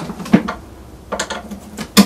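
Quarter-inch jack plug and cable being unplugged and handled, giving a few separate sharp clicks and rattles, the loudest just at the end.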